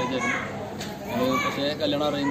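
Speech: people talking, with no other distinct sound.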